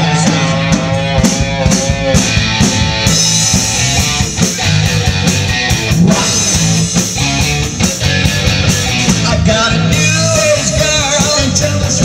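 A live rock band playing loud and steady: electric guitar, bass guitar and drum kit, with a man singing lead into a microphone.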